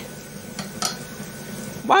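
Vegetable oil poured slowly from a plastic bottle into a wok: a steady soft hiss with two brief clicks, about half a second and just under a second in.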